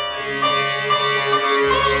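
Sitar playing a slow melody over a steady low drone, its notes changing about every half second. A deeper bass tone joins near the end.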